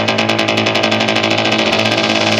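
Melodic techno build-up: a drum roll speeding up over a held bass note, the tension build that leads into a drop.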